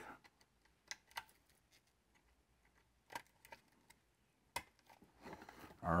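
A few light, scattered plastic clicks and taps from wiring harness connectors and cables being handled at the module. There are five or so sharp ticks with gaps between them, the crispest about four and a half seconds in.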